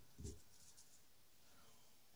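Near silence: room tone, with one brief, faint low sound just after the start.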